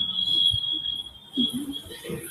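A steady high-pitched electronic whine, one unchanging tone, heard in a gap between spoken sentences.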